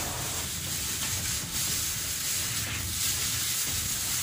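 Steady hissing background noise with a faint low hum.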